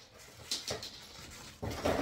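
Soft crinkling of paper wrapping being pulled open, in a couple of brief rustles, then a short voice sound near the end.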